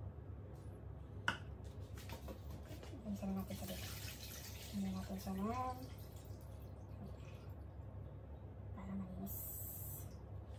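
Water splashing in a stainless steel bowl over a steel kitchen sink as rinse water is handled, with a hissy splashing spell in the middle. A sharp click comes about a second in, and a voice murmurs briefly a few times.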